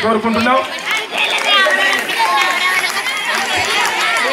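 Children's voices talking over one another, a steady chatter of several young speakers at once with no clear single voice.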